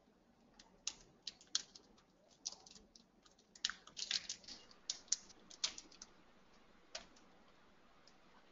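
Faint typing on a computer keyboard: irregular keystroke clicks, starting within the first second, coming thickest around the middle and stopping about seven seconds in.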